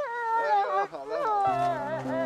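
A woman crying aloud in high, wavering wails. Soft background music with long held notes comes in about halfway through.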